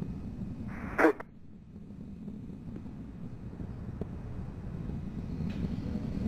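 Steady low rumble of Space Shuttle Discovery's rockets during ascent, carried on the launch broadcast. A brief, sharp burst of sound cuts in about a second in.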